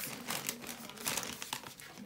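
Plastic chip bag crinkling as it is handled and set aside, a dense run of crackles that fades toward the end.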